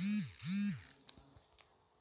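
A man's voice making two short hummed syllables, each rising and then falling in pitch, followed by a few faint clicks.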